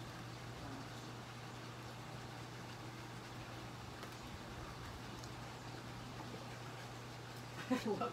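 Quiet background with a steady low hum and no distinct events.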